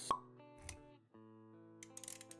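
Intro-animation sound design over music: a sharp pop just after the start, a short low thud a little later, then sustained musical notes return with a few light clicks near the end.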